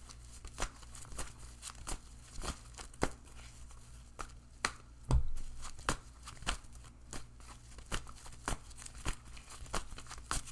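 A deck of tarot cards being shuffled by hand, the cards slapping and sliding against each other in sharp, irregular clicks about two a second. A dull thump comes about halfway through.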